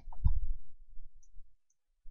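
A few short clicks at the computer with a low thump just after the start, fading to silence after about a second and a half.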